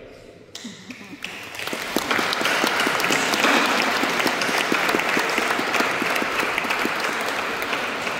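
Congregation and clergy applauding in a large church. A few scattered claps at first swell into full, steady applause about two seconds in.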